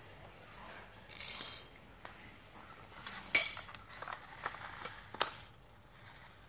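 Hard plastic toy pieces clicking and clattering as they are handled: a short scrape early on, then a few separate sharp knocks, the loudest about three seconds in.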